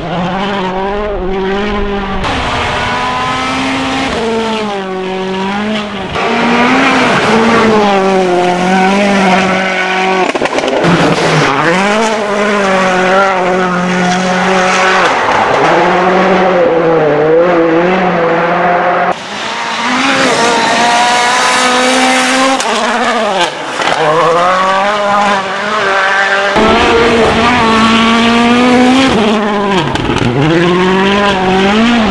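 Citroën DS3 WRC rally car's turbocharged four-cylinder engine revving hard on a gravel stage, its pitch climbing and dropping with quick gear changes and lifts, over tyre and gravel noise. The sound cuts abruptly several times between passes.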